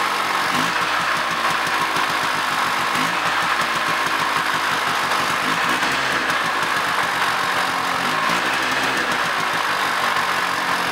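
Bare-chassis snowmobile engine running cold on its first start of the season. The revs rise and fall briefly four times, about every two and a half seconds.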